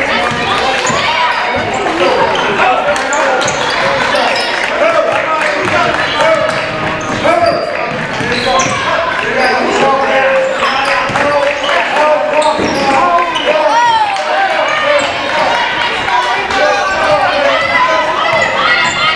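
Basketball being dribbled on a hardwood gym floor during a game, under a steady mix of overlapping voices from players and spectators, with the echo of a large gymnasium.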